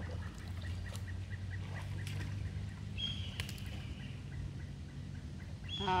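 Red-tailed hawk calling: one high call about halfway through, lasting about a second and falling slightly in pitch, over a steady low rumble.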